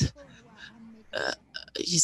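A short pause in speech, broken about a second in by a brief throaty vocal sound, before talking resumes near the end.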